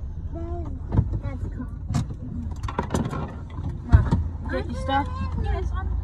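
Steady low rumble of a car heard from inside the cabin, with a few sharp knocks and faint voices over it.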